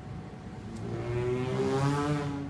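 Human beatboxing by a solo performer. About a second in, a pitched vocal bass note slides upward in pitch and swells, loudest near the end.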